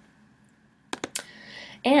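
Three quick clicks of computer keys about a second in, in an otherwise quiet pause, then a soft hiss; a woman's speech begins near the end. The key clicks fall just as the presentation advances to the next slide.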